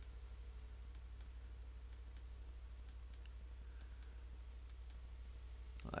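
Faint computer mouse clicks, mostly in quick pairs about once a second, as points of a line are clicked in, over a steady low hum.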